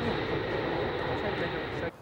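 Boeing 747 jet airliner passing low overhead: a steady jet engine noise with people's voices mixed in, cutting off suddenly near the end.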